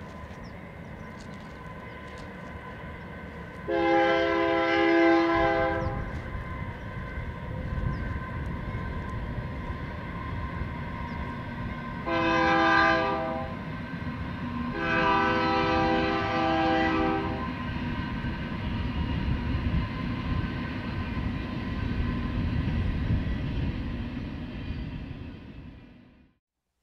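Train horn sounding three blasts, a long one, a short one, then another long one, over the steady rumble of a passing train that fades out at the end.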